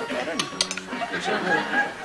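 A few light clinks of cutlery on china plates at a dinner table, under low voices.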